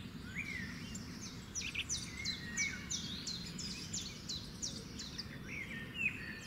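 Birds chirping, with a quick run of short, sharp, downward-sweeping notes through the middle, over a low steady background rumble.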